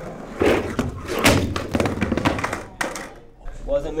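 Skateboard rolling on a hard studio floor with several hard thuds and clacks of the board landing and hitting the floor, the loudest about a second in. A man's voice is heard briefly near the end.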